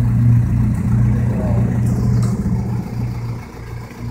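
A vehicle engine idling steadily with a low, even hum. It drops somewhat in level near the end.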